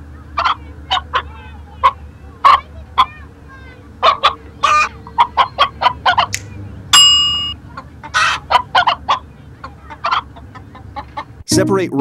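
A hen clucking in a series of short, separate calls, with one longer drawn-out call about seven seconds in that is the loudest. Near the end a narrator's voice and music take over.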